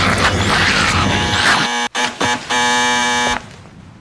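A loud, noisy din of music and effects cuts off about two seconds in. An apartment intercom door buzzer follows: a couple of short buzzes, then one steady buzz lasting nearly a second.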